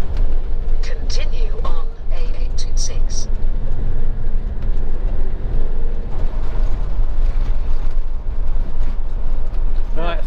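Cab noise of a motorhome driving on a wet road: a steady engine and road rumble, with a few brief high-pitched sounds in the first few seconds.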